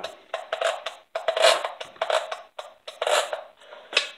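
A Stihl MS660 chainsaw's engine turning over slowly as the saw hangs on its starter rope in a compression check, with irregular clicking and scraping. The clicking is a coil wire caught in the flywheel.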